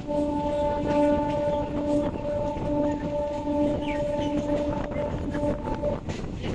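Suburban local train's horn sounding one long steady blast of nearly six seconds, over the running rumble of the moving train.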